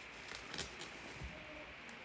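Faint crinkling of plastic bubble wrap being handled and pulled off a graded card slab, with a few light crackles.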